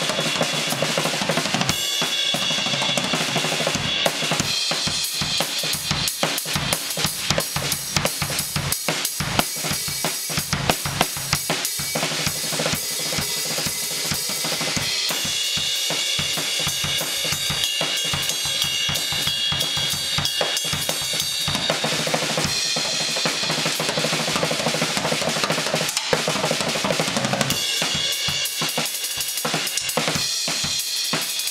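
Live drum kit solo: fast, dense strokes across bass drum and snare, with cymbals ringing through long stretches around the middle and again near the end.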